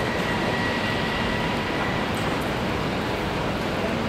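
Steady rumble of city street traffic, with a faint high whine through the first half.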